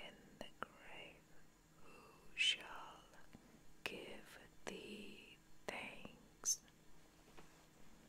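Soft, close-up whispered reading of scripture in breathy phrases, with sharp hissing 's' sounds and a few small clicks between the words.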